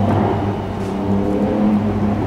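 Steady low engine hum, as of a motor vehicle running nearby.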